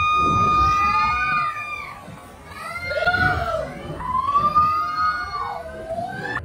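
High-pitched screaming from people as wild ponies run past them: one long held scream at the start, then shorter shrieks that rise and fall about three seconds in and again near the end.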